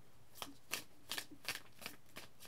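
Tarot cards being shuffled by hand: a few soft, quiet card snaps, about two or three a second.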